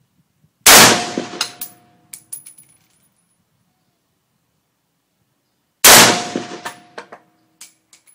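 Two single rifle shots from a Century Arms GP WASR-10 AK-pattern rifle in 7.62x39mm, fired about five seconds apart in semi-auto. Each loud crack is followed by a ringing tail and a few light clinks.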